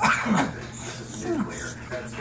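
Boxer dog giving short whimpering grumbles, each falling in pitch, about a second apart, while it nuzzles and wrestles with a person.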